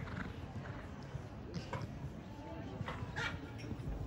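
Hoofbeats of a Holsteiner mare cantering on sand arena footing, with a few sharper sounds about one and a half and three seconds in.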